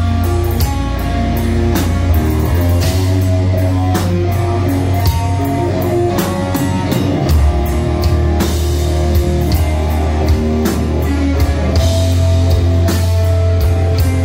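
Metal band playing loud and live: electric guitar, bass guitar and drum kit together, with steady drum strikes under heavy bass.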